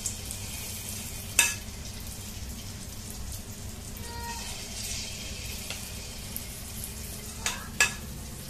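Luqaimat dough balls deep-frying in hot oil in a wok: a steady sizzle, with a sharp click about a second and a half in and two more in quick succession near the end.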